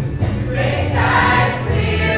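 Show choir of young voices singing together with a recorded or live band accompaniment.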